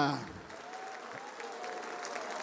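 Congregation applauding: steady clapping from many hands, following the last word of a spoken prayer.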